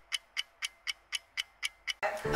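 Steady clock-like ticking, about four sharp ticks a second, added as a sound effect over the title card.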